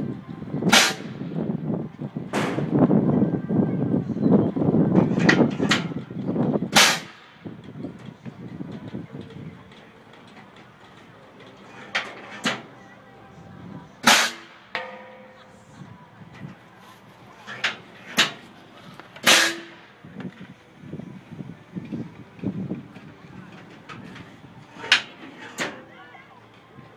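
Compressed-air apple cannons firing: a string of sharp blasts, about a dozen, spread irregularly with some in quick pairs. A low rumble sits under the first seven seconds.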